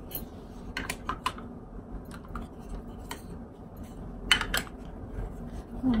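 Light plastic clicks and taps from handling an electric toothbrush and its charging base, with a louder clatter about four seconds in, where the toothbrush is dropped.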